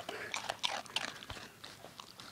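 A dog chewing Apple Jacks cereal right up against the microphone: a quick, irregular run of crisp crunches.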